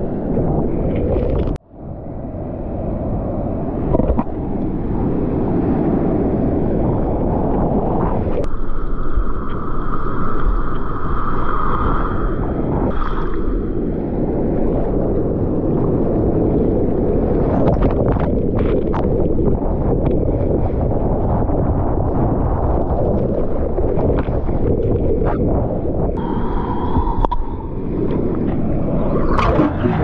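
Seawater sloshing and churning against an action camera in the surf, with wind and water buffeting the microphone and muffled gurgling as the camera dips underwater. A steady whine comes and goes for a few seconds near the middle and again near the end.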